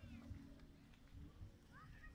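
Near silence with a faint low rumble, and a couple of short, faint high gliding calls from a bird near the end.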